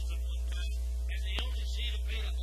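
Steady low electrical mains hum on an old 8-track tape transfer, with faint, indistinct higher-pitched bleed and tape hiss over it and one small click partway through.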